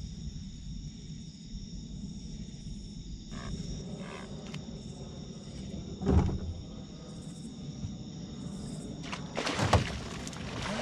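Steady high-pitched chorus of crickets, with a loud knock about six seconds in as a rod is pulled from its holder on the boat, and a short burst of knocks near the end as the fish is fought.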